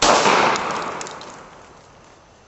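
A single loud gunshot at the very start, its blast trailing off over about a second and a half.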